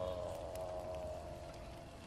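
A man's voice holding one long sung note that slowly falls in pitch and fades out near the end.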